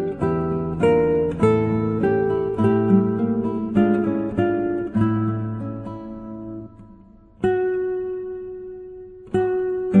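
Background music on acoustic guitar: plucked notes and chords that ring and fade. It thins out to one held, fading chord past the middle, and new plucked notes come in near the end.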